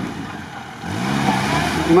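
Lada Niva engine running, revving up about a second in, its note rising slightly and then holding, while the car sits stuck in the swamp just short of getting through.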